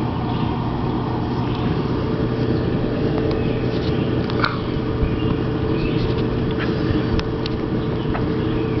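Steady low mechanical hum over a rumbling background, with a few faint ticks and short chirps.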